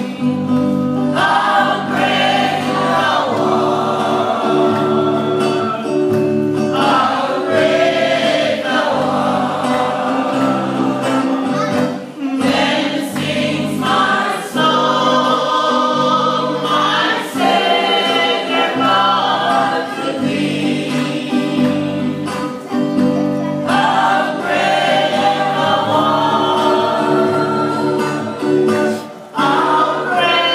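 Congregation singing a hymn together over held accompanying chords, the singing breaking briefly between phrases.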